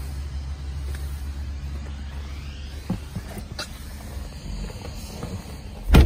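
Steady low rumble inside a car's cabin, with a few faint knocks and one sharp, loud thump near the end.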